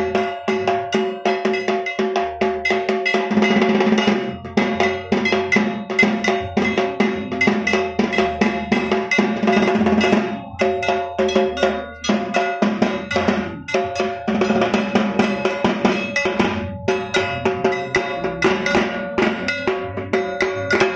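A small hand-held bell-metal gong (kasor) struck rapidly with a stick, its ringing tone hanging on between strokes, over a drum beaten in a fast, steady rhythm: Bengali puja percussion. The playing breaks off briefly a few times.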